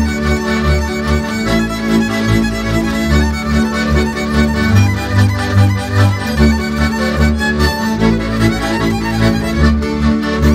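Transylvanian Hungarian folk string band playing a verbunkos dance tune: a fiddle carries the melody over chordal string accompaniment and a deep bass pulsing in a steady, even rhythm.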